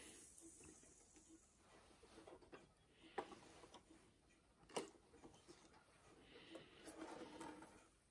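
Near silence with faint handling noise: a few soft clicks and rustles from the old cardboard sand-toy box and its paper vane wheel being turned by hand, the clearest click about five seconds in.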